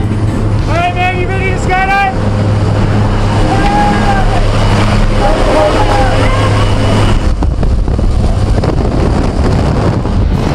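Loud steady rush of wind and propeller-engine drone through the open door of a jump plane in flight. Voices shout over it about a second in and again around four to six seconds in.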